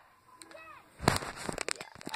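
Handling noise from a phone and a handheld radio being moved around: a sharp knock about a second in, followed by a few smaller clicks and bumps, with a faint brief voice just before.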